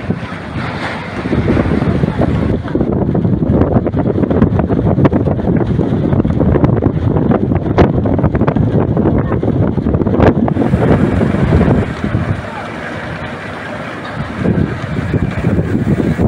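Strong wind buffeting the microphone, heaviest from about a second in until about twelve seconds in, over the wash of choppy sea waves.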